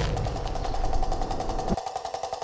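A low, steady ambient rumble with a faint hum and fast, faint, even ticking above it; the rumble cuts off abruptly near the end.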